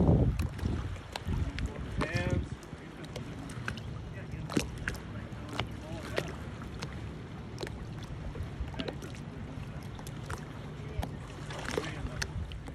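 Lake water lapping and gurgling in small waves, with many scattered light splashes and clicks, over wind rumbling on the microphone at the start. A short voice sounds about two seconds in, and a splash of swim-fin kicking swells near the end.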